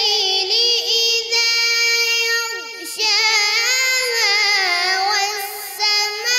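A boy reciting the Quran in a melodic chanting style, holding long ornamented notes that waver in pitch, with a breath pause about halfway through and another short one near the end.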